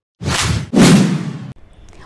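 Whoosh sound effects of a TV news logo transition: two swishes in quick succession, the second louder and trailing off before cutting off abruptly about a second and a half in.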